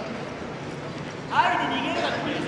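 Background noise of a sports hall with scattered voices, and a single loud voice call, rising in pitch, about one and a half seconds in.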